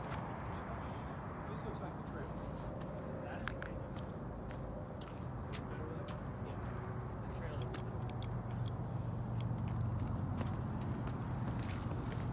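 Steady rush of distant freeway traffic, with scattered clicks and crackles of footsteps and brush as hikers walk over rock. A low hum grows louder in the second half.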